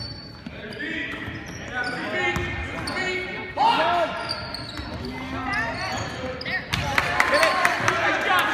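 Basketball game sounds in a large gym: a ball bouncing, short high squeaks of sneakers on the hardwood court, and voices, all with hall echo. There is a sudden loud sound about three and a half seconds in, and a busier run of squeaks and knocks from about seven seconds.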